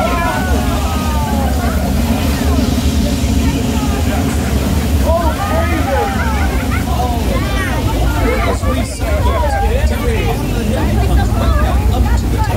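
Flash-flood effect: a large torrent of water rushing and splashing down a sloped street, a steady heavy rush with a low rumble underneath. Tram passengers call out excitedly over it in short bursts.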